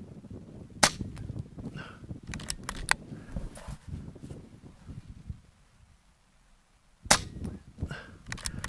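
Two shots from a regulated .25-calibre Air Arms S510 XS Ultimate Sporter PCP air rifle, about six seconds apart: the first about a second in, the second near the end. Each shot is followed a couple of seconds later by a few quieter sharp clicks.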